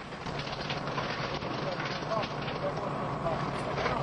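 Steady outdoor job-site noise with a low rumble, with faint voices calling in the background.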